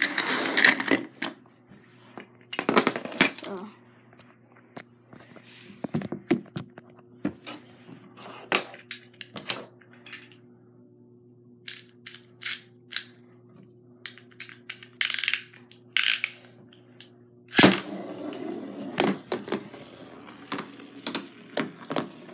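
Marbles and small plastic toys clattering, clicking and knocking irregularly on a wooden table and the floor as they are handled, dropped and roll, with a denser stretch of rattling near the end, over a steady low hum.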